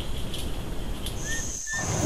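Rainforest ambience from a camera trap: a steady hiss of background noise, with two brief high chirps near the end. A thin, steady high insect-like whine sets in a little past halfway.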